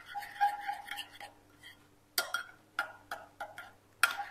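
A metal spoon stirring thick soup in a ceramic bowl. Soft scraping comes first, then a few separate clicks of the spoon against the bowl in the second half.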